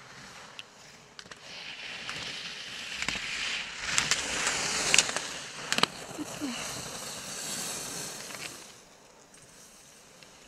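Skis carving through turns on groomed snow as a racer passes the gates: a hiss that swells, holds for several seconds and fades away. A few sharp clacks come in the middle.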